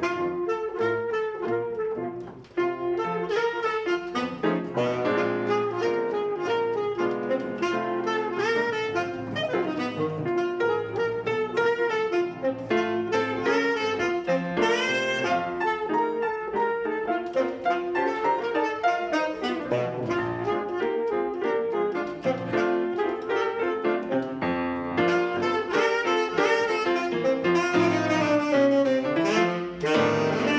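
Tenor saxophone and grand piano playing a jazz blues together, the saxophone carrying the melody over the piano's chords.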